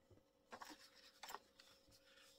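Faint rustling of a sheet of paper as a page is lifted off a stack and laid down on a desk, with two short rustles about half a second and a second and a quarter in.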